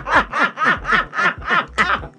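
A woman laughing: a run of short ha-ha pulses, about three a second, each falling in pitch.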